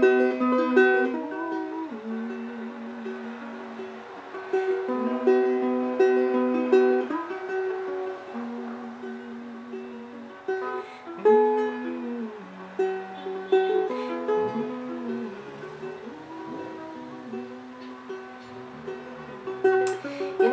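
Solo acoustic ukulele playing an instrumental break between sung verses: chords struck and left to ring, changing every second or two, with a few single-note runs.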